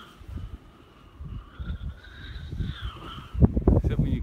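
Strong wind gusting over the microphone, with the loudest buffeting near the end. Behind it is a faint high whoosh that slowly rises and falls in pitch, from a Windrider Bee RC glider dynamic soaring past at speed.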